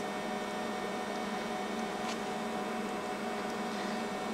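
Steady low electrical hum with a faint hiss of room background noise, and a faint tick about two seconds in.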